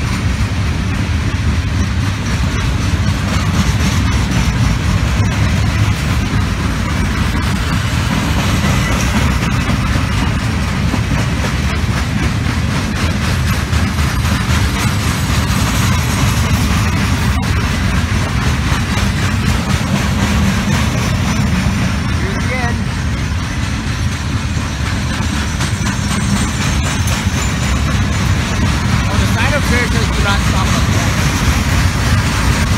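Loaded coal hopper cars of a freight train rolling past, a steady, heavy rumble and clatter of wheels on rail.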